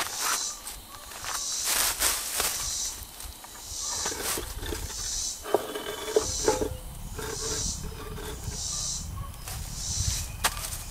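Heavy urn-shaped fountain base being tilted and shifted on its slab: rough grinding scrapes and knocks, with a few sharp squeaks or clicks past the middle.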